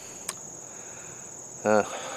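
Crickets trilling in summer grass: one steady, high-pitched drone that goes on without a break.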